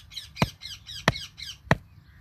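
A hammer striking a stake being driven into the soil: three sharp knocks, evenly spaced a little over half a second apart. Small birds chirp rapidly in the background.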